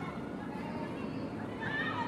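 Women's voices shouting out across an open football pitch over a steady outdoor rumble, with a loud high-pitched call near the end.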